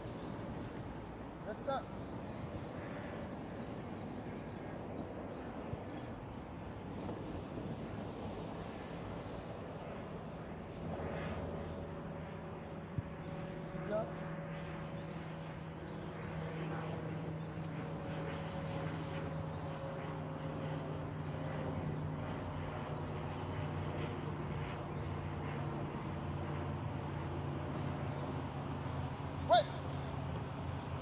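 Outdoor background noise. A steady low hum comes in about a third of the way through and runs on, with a few brief sharp knocks and chirps scattered through; the loudest is a single sharp knock near the end.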